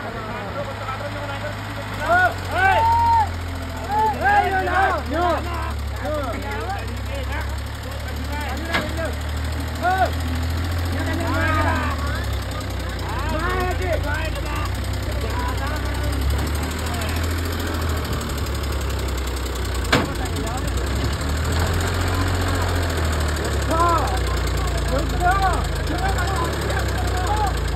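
Farmtrac Champion tractor's diesel engine running steadily under load as it hauls an empty trolley up out of a sand pit. Short voice-like calls come over it now and then, loudest a couple of seconds in.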